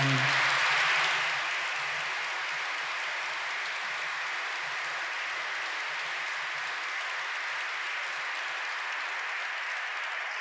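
Audience applauding, loudest in the first second or so, then holding steady.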